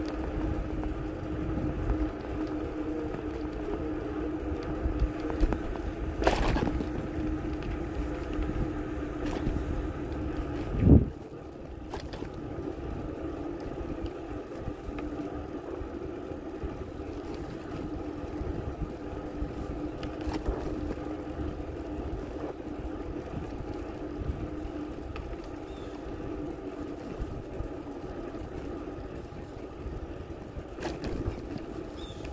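Bicycle rolling along a concrete path: a steady hum and low rumble from the ride, with a loud thump about eleven seconds in.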